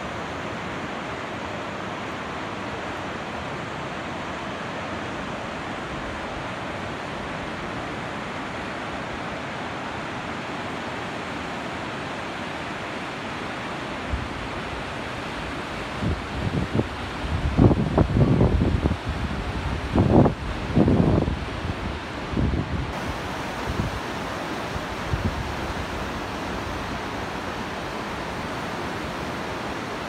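Steady rushing of a fast mountain river's white-water rapids. Irregular gusts of wind buffet the microphone from about halfway through for several seconds, and these gusts are the loudest sound.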